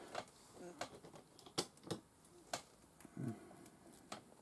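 Faint, irregular clicks and taps of small plastic Lego pieces being handled, with a brief low hum of a voice about three seconds in.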